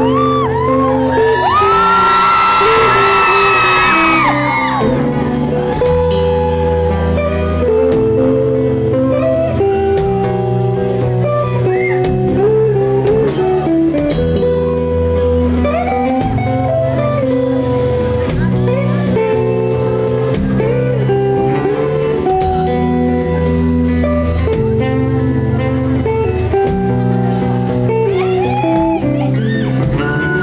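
Live band playing an instrumental passage on electric guitars over a bass line. High voices cry out briefly about two seconds in, and again near the end.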